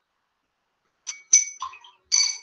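Silent for about a second, then a quick cluster of short, high-pitched clinks, each with a brief ring.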